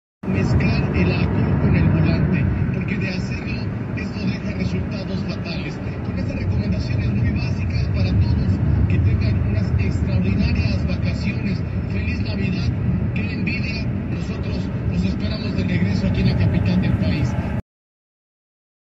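Car cabin noise while driving at speed: a steady low rumble of engine and tyres on the road, with an indistinct voice underneath. The sound cuts off suddenly near the end.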